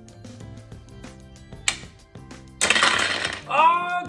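Plastic ice blocks of a Don't Break the Ice game falling through the frame and clattering down onto the tray and table, in one loud crash about two and a half seconds in after a few lighter clicks. A rising shout follows near the end.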